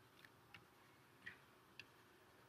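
Near silence with four faint ticks spread through it: a stylus tapping on a tablet screen while writing.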